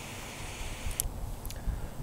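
Butane torch lighter hissing faintly as its flame touches up a cigar's uneven burn, dying away about a second in, followed by two light clicks. Low wind rumble on the microphone underneath.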